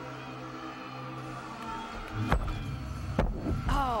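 Steady background music, then a heavy thud about two seconds in as a gymnast lands a double front dismount off the balance beam onto the landing mat, and a second thud about a second later as she lands short and falls back onto the mat. Low crowd noise rises with the landing.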